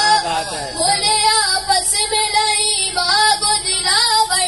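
A boy singing an Urdu devotional poem solo into a microphone, with long held notes that waver and turn in ornaments.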